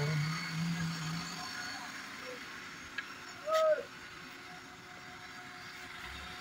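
A car engine idling steadily, its AC compressor running after the gas recharge, with a low hum for the first second and a half. A short hooting call, rising then falling, stands out about three and a half seconds in.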